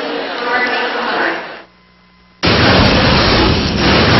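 Arena crowd noise with indistinct voices that drops out abruptly a little after a second and a half, followed by a moment of near silence. About two and a half seconds in, a sudden loud boom opens hard-driving broadcast bumper music.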